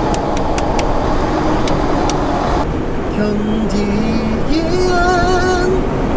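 Steady road and engine noise inside a moving van's cab. About halfway through, a low hummed note begins, followed by a held, wavering sung note near the end.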